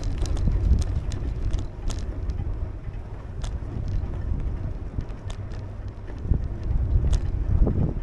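Wind buffeting the microphone over a low rumble from a bicycle rolling along a cracked alley pavement, with scattered sharp clicks and rattles as it goes over bumps.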